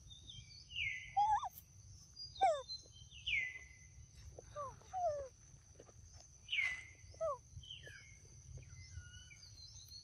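High whistled calls that fall in pitch. Three louder sweeps come about a second, three and a half and six and a half seconds in, with shorter, lower falling notes between them. A steady high insect drone runs underneath.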